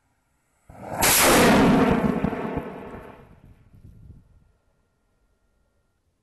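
A hobby rocket's solid-propellant motor igniting and lifting off the launch rod: a sudden loud rush of exhaust under a second in, fading away over about three seconds as the rocket climbs.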